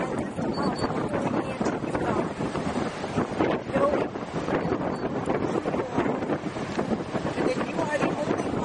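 Wind buffeting the camera microphone in gusts that rise and fall, with a voice partly buried underneath.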